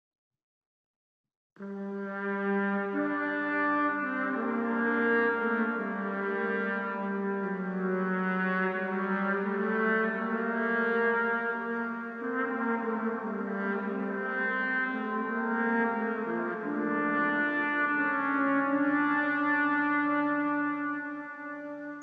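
Solo trombone melody heard with York Minster's cathedral reverberation: a dry recording convolved with the cathedral's impulse response, so each note rings on and blurs into the next. It starts after about a second and a half and stops abruptly at the end.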